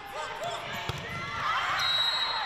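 Sneakers squeaking on a hardwood volleyball court during a rally, with a single sharp hit of the ball about a second in. A short high steady tone, a referee's whistle ending the rally, starts near the end.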